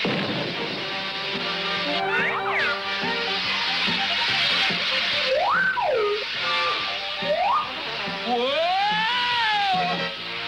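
Cartoon sound effect of a torn hot-air balloon: a continuous rush of escaping air, with whistling pitch glides that rise and fall several times, the last a long arc near the end, over background music.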